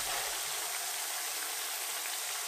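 Hash brown patties frying in shallow oil in a pan: a steady sizzle.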